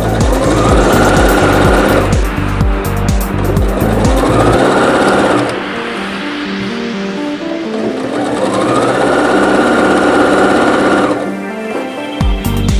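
Domestic sewing machine stitching in three runs, the motor rising to speed at the start of each and then stopping. Background music with a beat plays under it and drops out for the middle stretch.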